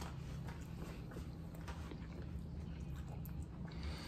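Faint chewing and small mouth sounds of people eating soft sandwiches, over a steady low hum.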